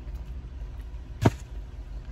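A man chewing a bite of brisket and bread inside a car's cabin, with one sharp click a little over a second in, over a low steady hum.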